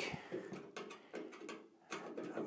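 Faint handling noise with a few light clicks: fingers working a safety screw in the sheet-metal electronics cover of a K40 CO2 laser cutter.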